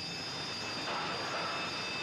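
Steady rushing roar of seawater flooding into a ship's boiler room, a film sound effect with a few faint steady high tones over it.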